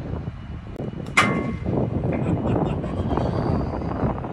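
A golf club striking a ball about a second in: one sharp crack with a short metallic ring.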